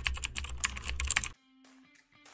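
Computer-keyboard typing sound effect: a quick run of key clicks over soft background music. Both stop suddenly a little over a second in.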